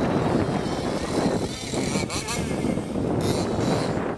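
Electric RC monster truck driving hard across grass, its motor whining up and down in pitch. Wind rumbles on the microphone underneath, and there are bursts of hiss as the tyres throw up dirt.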